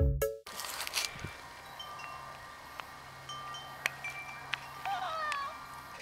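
A cat meowing once, a short call that bends in pitch, about five seconds in, over a quiet outdoor background with scattered ringing tones at several pitches. Background music cuts off in the first half second.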